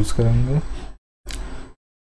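A man speaking Hindi in a screen-recording voice-over for about a second, then a brief noise, then dead silence where the recording is gated.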